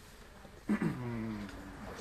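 A man's voice making a drawn-out wordless hesitation sound, starting about two-thirds of a second in with a short drop in pitch, then held briefly before trailing off.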